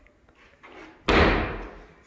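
The wood-fronted door of a built-in kitchen fridge shut with a slam about a second in, the sound dying away over most of a second.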